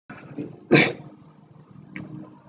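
A single short cough, a little under a second in, with faint room noise around it.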